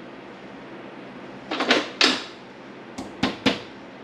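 Small steel parts clinking and knocking as a key is worked into the keyway of a sprocket on a gear motor's shaft: two short scraping clatters about one and a half to two seconds in, then three sharp clicks about a quarter second apart near the end.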